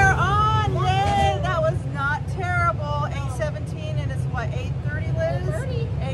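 High-pitched voices talking throughout, over a steady low rumble.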